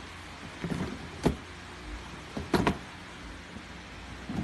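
Plastic drawers of a chest of drawers sliding on their hidden rollers and knocking: a short slide and a sharp knock about a second in, then two quick knocks a little after halfway.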